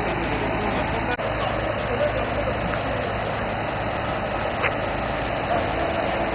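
An engine running steadily at idle, a continuous low hum under a haze of noise.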